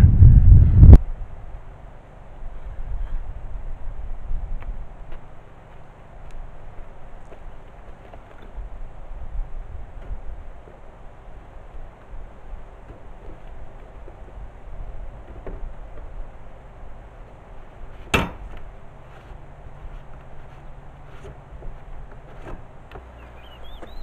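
Wind buffeting the microphone for about a second, then a quiet outdoor background with scattered light knocks and one sharp click about 18 seconds in.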